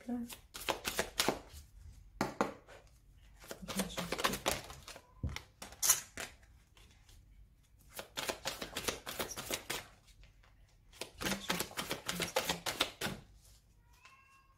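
A deck of oracle cards being shuffled by hand: bursts of rapid card clicks, about six of them, with short pauses in between.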